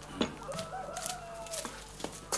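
A chicken calling: one drawn-out call lasting about a second, starting half a second in, after a sharp knock.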